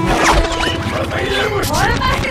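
Electronic robotic chirps and warbles, many quick rising and falling pitch glides in a row, over a low rumbling action-trailer soundtrack.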